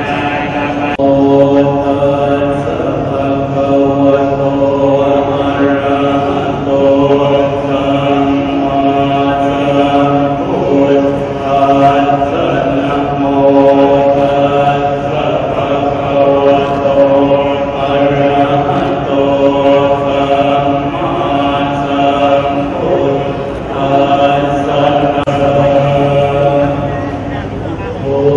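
A group of Thai Buddhist monks chanting in unison, a steady, droning low-pitched recitation in long held phrases with brief pauses for breath.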